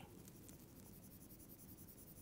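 Near silence with faint, rapid scratching of a stylus shading on a drawing tablet.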